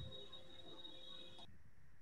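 Faint background hiss from an open video-call microphone, with a thin steady high whine and a fainter low tone that cut off about one and a half seconds in.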